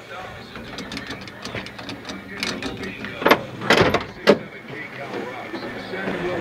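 Ford 170 straight-six engine idling steadily while running hot with a cooling problem. Three sharp knocks come about a second apart past the middle.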